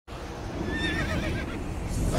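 A horse whinnying: one wavering high call about a second in, over a steady low rumble.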